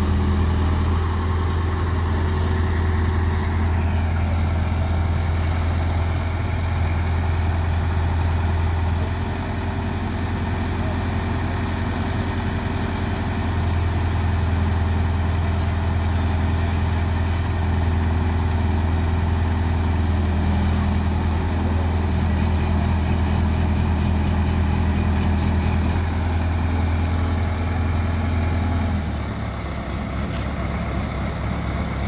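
Diesel engine of an ACE hydraulic mobile crane running steadily under load while it lifts an overturned truck: a loud, low drone that eases for a few seconds about a third of the way in and drops off near the end.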